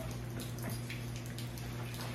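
Home treadmill running at low speed with a steady low motor hum, under a faint even hiss of rain.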